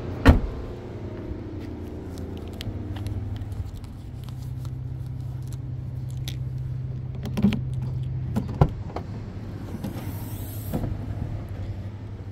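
A Dacia Sandero Stepway's rear door shut with a single loud thump just after the start, over a steady low hum. About seven and a half and eight and a half seconds in come two smaller knocks as the tailgate is unlatched and opened.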